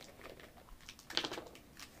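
Screw cap of a small grapefruit juice bottle being twisted open: a few faint clicks, with a brief crackle about a second in.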